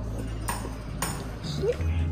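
Background music with a regular beat over a stepping bass line.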